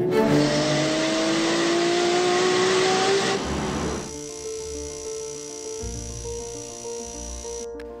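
Nissan sports car's engine accelerating hard, its pitch climbing steadily for about three seconds before it cuts away, over background music. Music alone carries on after it.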